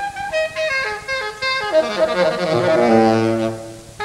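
Saxophone playing a jazz phrase: separate notes, then a quick downward run that lands on a low note held for about a second before it fades near the end.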